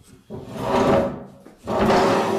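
A two-step stool dragged out across the floor, scraping twice: one long drag, then a second starting near the end.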